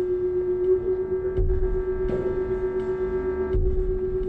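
Ambient drone music: a steady humming tone held throughout. A set of fainter higher tones comes in about a third of the way through and drops out near the end, over low rumbling swells and scattered faint clicks.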